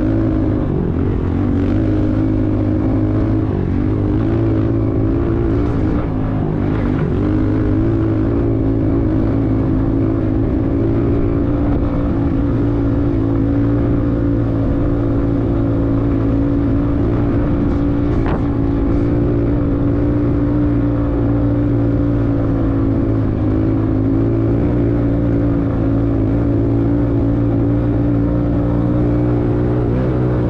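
A vehicle engine running at steady revs, a constant hum whose pitch wobbles only slightly.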